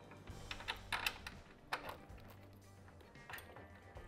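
Soft background music with a few light clicks and taps from a mounting bolt being worked into a motorcycle's upper shock mount, the sharpest about a second in.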